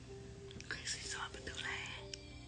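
A woman's breathy whispering, lasting about a second, over soft background music with long held notes.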